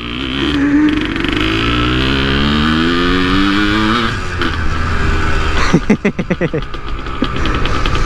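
Yamaha DT 180's single-cylinder two-stroke engine accelerating, its pitch rising steadily for about four seconds, then dropping as the throttle comes off. A moment of uneven, choppy revs follows before it settles into a steady run.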